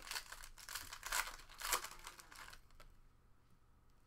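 Foil trading-card pack being torn open and crinkled by hand, a run of short rustles that fades after about two and a half seconds into faint handling of the cards.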